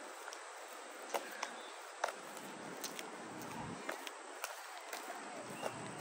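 Faint steady outdoor background noise, broken by a few sharp, irregular clicks about a second apart.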